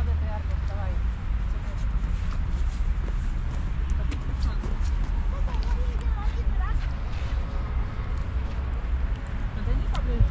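Outdoor street ambience: a steady low rumble throughout, with faint voices of a few passers-by heard now and then.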